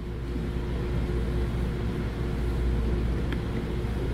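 Steady low hum of room background noise with a faint steady tone above it, and no speech.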